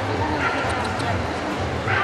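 Dogs giving short yips and barks over a steady murmur of crowd chatter in a large, busy hall. The sharpest yip comes near the end.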